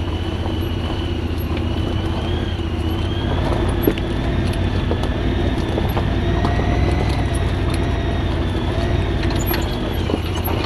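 Honda Pioneer 1000 side-by-side's parallel-twin engine running steadily at low trail speed, with a steady high whine over it that rises slightly about three seconds in. Occasional short knocks and rattles come from the machine working over rough dirt.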